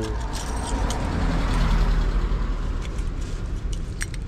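A car driving past, its engine rumble and tyre noise rising to a peak about a second and a half in and then fading, with a few light clicks close by.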